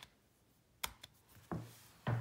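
Faint clicks of a MacBook Air's keys, two short sharp ones about a second in, followed by a soft dull bump about half a second later.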